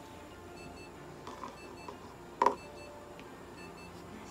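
Short, high electronic beeps from clinic equipment, repeating at intervals. A single brief loud noise comes about two and a half seconds in.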